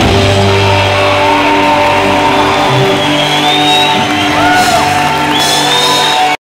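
Punk rock band playing live with electric guitars and bass holding long sustained notes, with a few high whistling glides over them in the second half.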